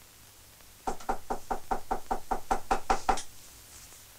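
Knuckles rapping on a door: a quick run of knocks, about six a second, starting about a second in and lasting a little over two seconds.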